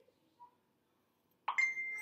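Plastic measuring spoons clinking against the neck of an amber glass bottle about a second and a half in, leaving a short clear ring. The rest is near silent.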